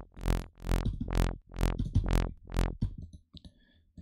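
Vital software synth playing a low, repeated bass note about seven times, roughly two a second, through its analog-style low-pass filter: each note starts bright and quickly turns dull. The notes stop about three seconds in, leaving only faint clicks.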